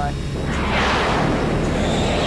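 Jet aircraft passing: a loud rushing jet noise swells about half a second in and holds, over a steady low engine drone.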